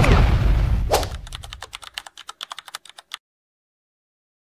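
Edited-in sound effects: a deep rumble fading out over the first two seconds, overlapped by a fast run of clicks like typing, which stops about three seconds in, followed by silence.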